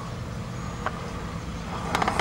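A steady low background rumble with no speech, with a faint click about a second in.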